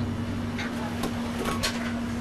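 Commercial kitchen background: a steady machine hum with a few light clicks and knocks of kitchenware.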